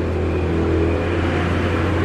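A motor vehicle engine running close by, a steady low hum, over the general noise of street traffic.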